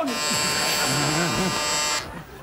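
Game-show buzzer sounding one steady, harsh electric buzz about two seconds long that cuts off suddenly: the host's signal to switch from one pair of performers to the other.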